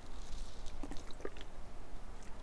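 Wet mouth sounds of wine tasting: a short airy slurp, then a run of small wet clicks and squelches as a mouthful of Chardonnay is worked round the mouth and spat into a spittoon.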